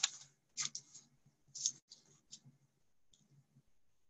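Faint handling sounds: a few short, scratchy rustles and clicks in the first two and a half seconds, as a hand moves over a paper notebook page.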